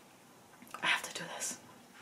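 A woman speaking a word or two softly, close to a whisper, about a second in, ending in a brief hiss.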